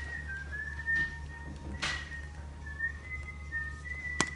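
A thin, high whistling tone held in several short notes that step slightly up and down in pitch, with a sharp click about two seconds in.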